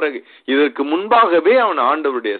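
Speech only: a man preaching in Tamil.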